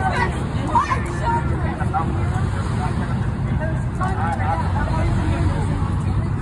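Several people talking over one another, indistinct, over a steady low rumble.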